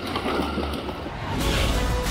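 Background music coming in, with a steady low bass that grows louder about a second and a half in.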